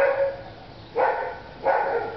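A dog barking, three barks within about two seconds.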